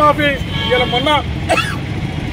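A man speaking loudly in Telugu, breaking off after about a second and a half, over a steady low rumble of outdoor street noise.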